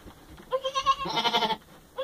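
Newborn Boer goat kid bleating twice in quick succession, about half a second in.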